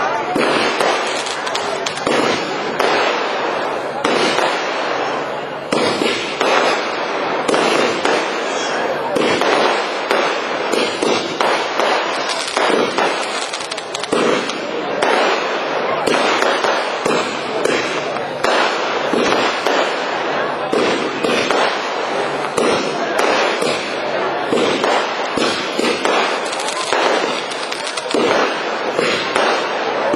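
Fireworks display: aerial shells bursting overhead in a dense, unbroken run of crackles and bangs, many per second.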